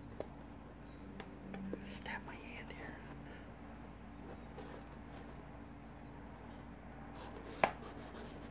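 Faint scraping and small clicks of a scissors point picking at packing tape on a cardboard box, with one sharper click near the end, over a steady low hum.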